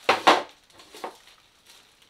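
Clear plastic storage box with paper raffle tickets inside set down on a table: two quick sharp knocks in the first moment, then a lighter knock about a second in.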